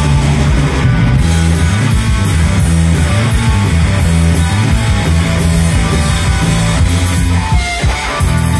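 Live rock band playing an instrumental passage: bass guitar, electric guitar and drums, with a steady cymbal beat and some sliding guitar notes near the end.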